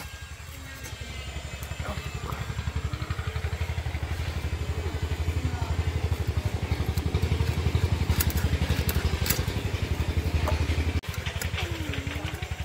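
A small engine running nearby with a fast, low rhythmic thud, growing louder over the first few seconds and then holding steady.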